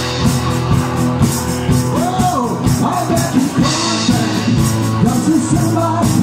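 Live rock-style band music: a male lead voice singing over strummed guitar and a steady hand-played percussion beat with cymbal.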